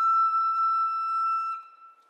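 Recorder holding one long, steady high note that fades away about one and a half seconds in.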